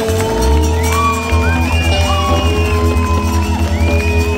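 Live band playing a pop-rock song on guitars and electric bass, with long held high notes that slide between pitches. About a second in, the bass changes from a held note to a fast repeated pulse.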